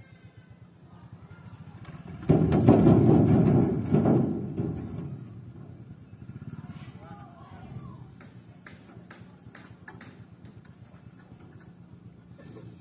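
Small motorcycle engine running. About two seconds in it revs hard for a couple of seconds as the bike rides down the bank onto a wooden punt, then drops back to a low idle. A few sharp knocks follow later.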